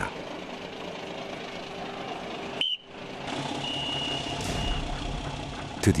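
Steady hum of a fishing boat's engine and deck machinery, broken by a brief drop-out near the middle. Soon after, a high steady beep sounds for about a second.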